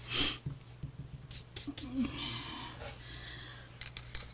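A short, loud breathy sniff near the start, followed by a few light clicks and taps of colouring pencils and a marker being handled on the table.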